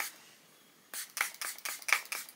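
Pump-action mist spray bottle of heat-protection spray spritzing onto wet hair: a quick run of about half a dozen short hissing spritzes from about a second in.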